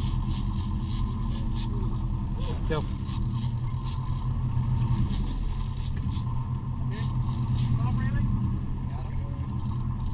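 A sportfishing boat's engines running with a steady low drone, with brief faint voices now and then.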